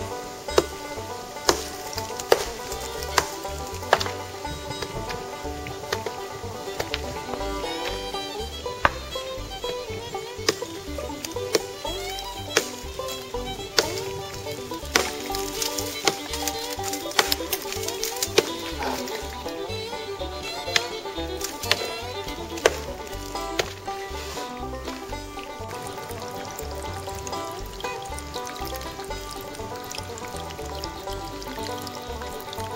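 Instrumental background music, with a pick striking layered sandstone and limestone: sharp blows about a second apart in the first few seconds, then scattered blows through the middle.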